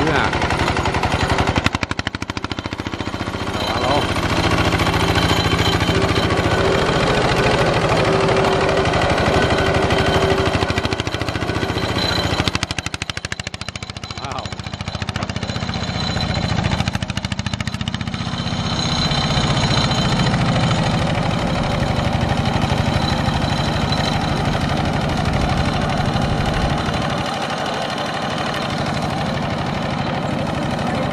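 Single-cylinder diesel engine of a two-wheel walking tractor running steadily with a rapid, even chugging. It dips in loudness for a couple of seconds around the middle.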